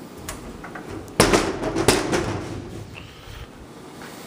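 Kitchen cabinet doors being handled and shut: a light click, then a clattering stretch with two sharp knocks, the first a little over a second in and the second about two-thirds of a second later, dying away soon after.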